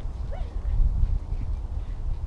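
Wind buffeting the microphone in an uneven, gusting low rumble, with one brief rising call about a third of a second in.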